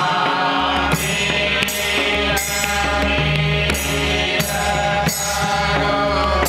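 Men's voices singing a Dhrupad-style Vaishnava devotional song together, accompanied by a pakhawaj barrel drum and jhaanjh hand cymbals. The cymbals strike evenly, about three times every two seconds.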